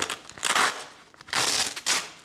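Velcro (hook-and-loop) fastener on a camera-holster belt being pulled apart as the padding is peeled off the belt: two rips, each about half a second long.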